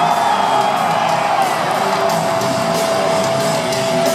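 Loud live heavy metal band playing, recorded from the crowd in an arena: guitars and drums with one long held note running through it.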